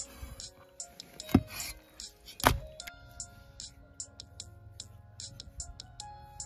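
Two heavy cleaver chops through raw pork onto a wooden chopping board, about a second apart, over background music.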